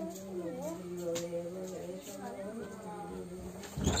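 An elderly woman's voice reading aloud from a book in a drawn-out, sing-song chant, with a steady low hum underneath. A single dull thump comes near the end.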